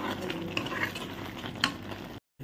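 A steel ladle stirring thick onion-tomato masala as it sizzles in a frying pan, with a brief sharp click about one and a half seconds in.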